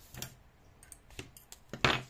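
A few short clicks and taps from hands handling a yarn needle and a small plush toy: a light click near the start, a fainter one about a second in, and a louder knock near the end.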